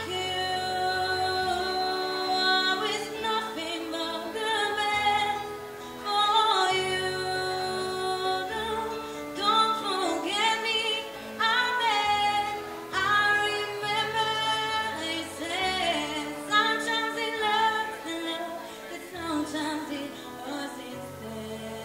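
A woman singing into a microphone, in sung phrases with long held notes, over a steady instrumental accompaniment.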